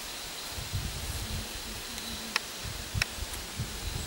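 Outdoor ambience with rustling and irregular low rumbling gusts of wind on the microphone, broken by two short sharp clicks about halfway through and about three quarters of the way through.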